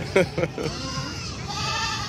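Nigerian dwarf goat bleating once, a held, arching call starting about a second and a half in, after a short burst of laughter at the start.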